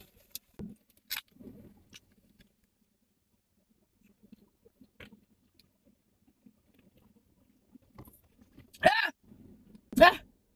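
Faint clicks and handling noises from a drink can, then near the end two loud coughs set off by spicy food.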